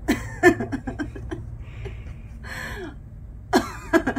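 A woman laughing in short, breathy bursts, with a louder burst near the end.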